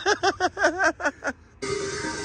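Men laughing in a quick run of short bursts, then an abrupt cut to a steady held musical tone near the end.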